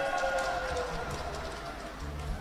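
The last chord of an acoustic guitar ringing out and fading away into the hall's background noise.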